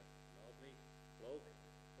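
Steady electrical mains hum with many evenly spaced overtones, under a near-silent pause with one short spoken word from a man about a second in.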